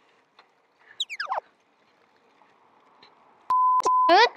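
Edited-in sound effects: a quick whistle-like tone sliding steeply down in pitch about a second in, then near the end a steady beep of about half a second.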